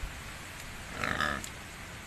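A pig gives one short grunting call about a second in, over a steady hiss of rain.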